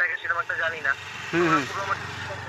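A motorcycle passing by on the road: its engine noise swells during the first second and a half, the pitch drops as it goes past, and a steady low engine hum follows.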